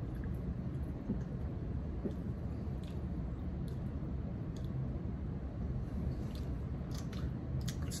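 People sipping and swallowing soda from glass jars: soft mouth and swallowing sounds with a few faint clicks, over a steady low room hum.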